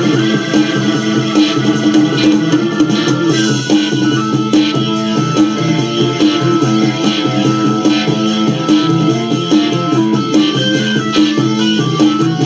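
1970 Belgian psychedelic rock recording: a Hammond organ played through a Leslie speaker, bent and 'choked', over a persistent throbbing bass line. One long high note is held about halfway through.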